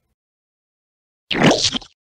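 Dead silence, then about a second and a half in a single short, wet splat sound effect of a body being crushed underfoot.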